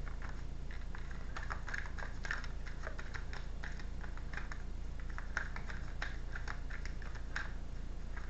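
A deck of tarot cards being shuffled by hand: a quick, irregular run of soft card clicks and slaps, over a steady low hum.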